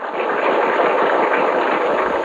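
Audience applauding: an even, dense clatter of many hands clapping at a steady level.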